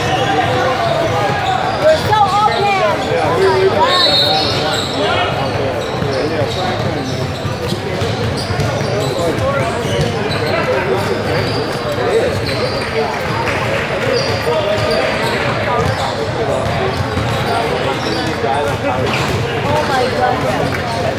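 A basketball bouncing on a hardwood gym floor amid indistinct overlapping chatter from players and spectators, echoing in a large gym.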